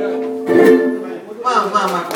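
Ukulele chord strummed about half a second in and left to ring out as the song's final chord. People start talking about a second and a half in.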